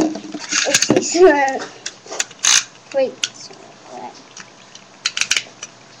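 A handful of sharp plastic clicks and rattles, the loudest about two and a half seconds in and a quick cluster near the end: Beyblade tops and launchers being handled and readied for a launch, with laughter at the start.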